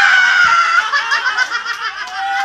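A group of people laughing and shrieking. One high shriek is held for most of the first second, then gives way to mixed laughter.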